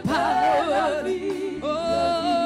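Gospel worship singing: a woman's lead voice over a group of women backing singers, with long held notes that bend and waver in pitch.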